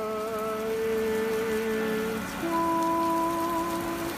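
A man singing slow, long-held notes, with steady rain falling behind him; the melody drops to a lower note about halfway through.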